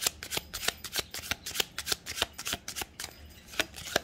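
A deck of tarot cards being shuffled by hand, a quick, uneven run of short crisp card snaps and slaps.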